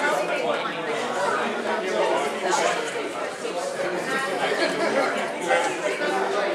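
Many people talking at once in a large hall: overlapping chatter with no single voice standing out.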